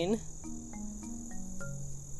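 A steady, high-pitched insect chorus, like crickets trilling in the background.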